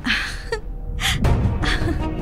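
A woman's sharp gasps: two or three short breaths over background music.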